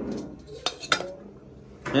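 Stainless-steel spoon clinking against steel pot and dishes while curry is served, with two sharp clinks a little under a second in.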